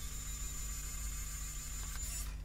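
A 3D printing pen's small filament-feed motor running, a steady high whine and hiss over a faint low hum.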